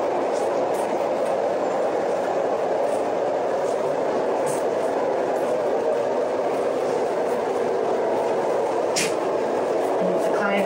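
A steady, even rushing noise holding at one level throughout, with a brief click about nine seconds in.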